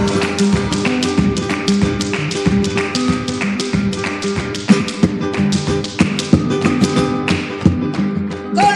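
Flamenco footwork (zapateado): rapid heel-and-toe taps at about five or six a second, with a few harder accented stamps in the second half, over flamenco guitar on a vintage recording of a colombiana flamenca, in a break between sung verses.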